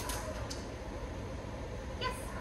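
Steady low room hum, with two faint clicks in the first half-second.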